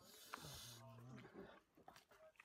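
Faint dry rustle of a puffed-rice jhal muri mixture being stirred by hand in a plastic bowl. About half a second in, a faint, drawn-out low voice is heard.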